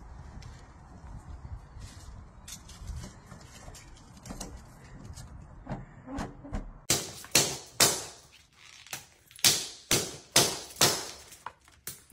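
A low rumble with a few faint clicks, then from about seven seconds in a run of loud, sharp knocks, about two a second.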